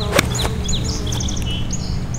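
A golf club strikes a ball off the tee with one sharp click about a quarter second in. Birds chirp in quick, repeated sweeping notes over a steady low rumble.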